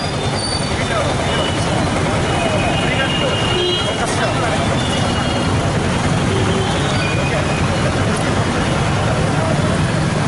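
Steady road traffic noise, with the voices of a crowd standing close by mixed in.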